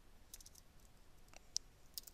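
Faint computer keyboard keystrokes: a handful of scattered, irregular clicks, one sharper than the rest about a second and a half in.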